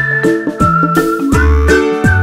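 Cheerful background music: a whistled tune gliding over plucked strings and a bass line.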